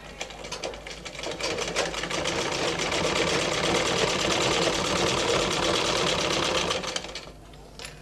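Domestic sewing machine stitching a seam in cotton fabric, its needle clicking rapidly. It picks up speed over the first second or so, runs steadily, and stops about seven seconds in, followed by a couple of light clicks.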